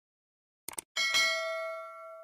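Subscribe-button animation sound effect: two quick clicks, then a bell chime struck twice in quick succession about a second in, ringing on and fading.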